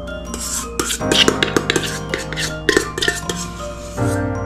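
A utensil scraping and knocking inside a stainless steel mixing bowl as the last of the mascarpone cream is scraped out. It is a rapid run of scrapes and sharp clicks that starts just after the opening and stops shortly before the end, over soft mallet-percussion background music.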